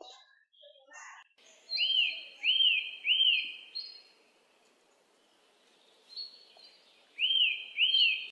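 A bird calling: a repeated, arched chirp given three times in quick succession, then again twice near the end, over faint background noise.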